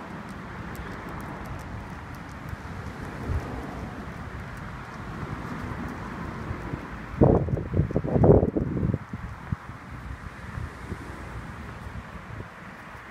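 Wind buffeting the microphone on a blustery day: a steady rushing rumble, with a louder gust lasting about two seconds past the middle.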